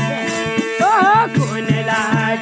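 Bhajan kirtan music: a hand drum beats several strokes a second under steady held tones, with a jingling rhythm in the highs. A short wavering melodic phrase, sung or played, comes about a second in.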